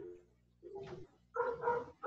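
A dog barking and yipping in three short bursts.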